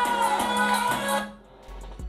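Latin-style music with a shaker rhythm playing from the Asus VivoBook laptop's built-in speakers as a sound-quality test; it stops about a second and a half in.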